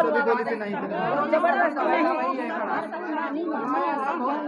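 Several people talking at once, their voices overlapping into chatter.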